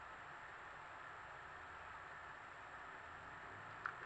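Quiet room tone: a steady faint hiss, with one small click just before the end.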